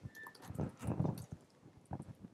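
Soft, irregular clicks and taps of a laptop keyboard being typed on, about half a dozen keystrokes spread unevenly.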